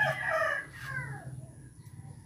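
A rooster crowing once: a single high-pitched crow of about a second and a half that trails off with a falling tail.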